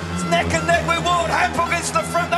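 Music with a steady low bed and a regular light beat, with a voice mixed in.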